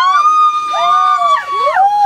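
Several women whooping and screaming together in celebration: long, high-pitched held cries that overlap, each rising and falling in pitch.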